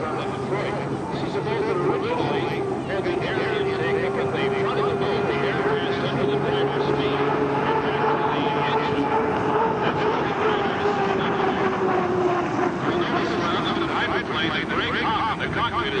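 Turbine engine of an Unlimited racing hydroplane running at speed on a test lap, a steady whine that eases slightly lower in pitch about three-quarters of the way through.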